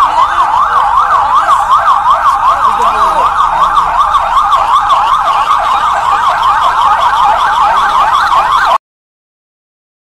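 Electronic police vehicle sirens in a fast yelp, the pitch sweeping rapidly up and down about three times a second, with two sirens overlapping. Loud and steady, cutting off abruptly near the end.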